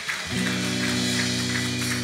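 Live worship band playing an instrumental passage: drums with cymbal wash and acoustic guitar, with a held chord coming in about a third of a second in and sustaining.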